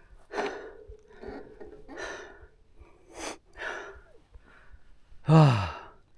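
A cyclist out of breath after a steep mountain-bike climb, breathing hard in short puffs, then letting out a long voiced sigh that falls in pitch near the end.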